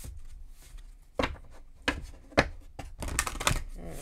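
Moonology oracle card deck handled and shuffled by hand: a few sharp card slaps about a second apart, then a quick run of shuffling near the end.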